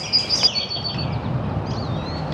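A songbird singing: a high, thin, steady note held for about a second, then a few faint high chirps near the end, over outdoor background noise.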